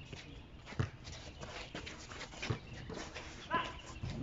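Basketball bouncing on an outdoor concrete court: a few separate dull thuds about a second apart, with a short high squeak about three and a half seconds in.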